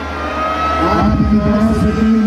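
Voice amplified through a loudspeaker system, mixed with crowd noise over a heavy low rumble, with a steady high tone underneath.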